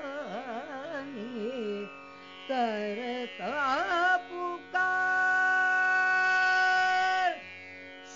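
A female Hindustani classical voice sings a tappa in Raag Des, with rapid shaking ornaments through the first half and then one long held note in the second half, over a steady tanpura drone. No tabla is heard.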